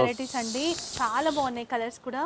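Saree cloth rustling as it is spread out and smoothed by hand, a steady hiss lasting about a second and a half, under talking.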